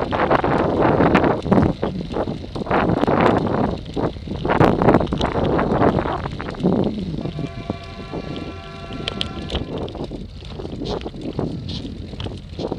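Wind buffeting the microphone of a bike-mounted camera on a road-bike climb, in uneven gusts that ease off in the second half. A steady pitched hum with several overtones sounds for about three seconds past the middle.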